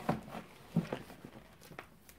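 A book being pulled off a bookshelf by hand: a few faint knocks and rustles of covers and paper as it slides out and the books beside it tip over.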